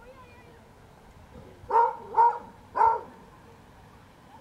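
A dog barking three times in quick succession, a little under half a second apart, about two seconds in.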